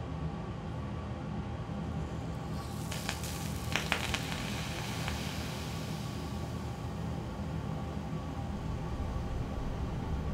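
A couple of sharp crackles about three to four seconds in, then a hiss that fades over the next two seconds: a solution of caesium in liquid ammonia reacting violently with iodine monochloride. Soft background music runs underneath.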